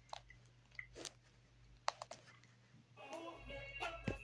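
A few faint, separate clicks, then music coming in about three seconds in.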